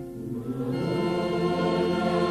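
Choral hymn music: a choir comes in about half a second in over the accompaniment and grows louder.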